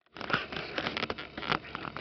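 A series of light, irregular clicks and knocks over a faint background hiss.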